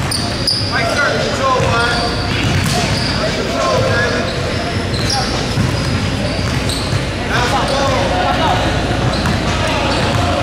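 Basketball dribbled on a hardwood gym floor during play, with players and spectators calling out. It all echoes in a large hall.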